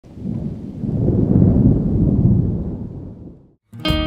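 A low rolling rumble that swells and fades away over about three and a half seconds, then music with strummed guitar starts just before the end.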